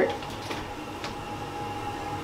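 Toilet running unprompted: a steady whine over a faint hiss, as of the cistern refilling through its fill valve.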